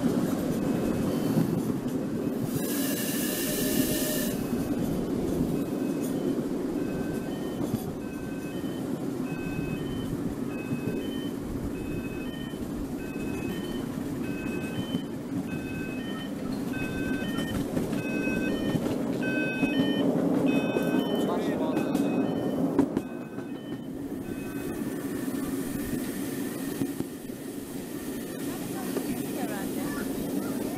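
Miniature steam railway train running with a steady rumble, heard from the open passenger cars. A loud, high steam whistle blows for about a second and a half, about three seconds in. From about seven to twenty seconds a series of short high notes at changing pitches sounds over the rumble, which then falls away sharply about twenty-three seconds in as the train slows.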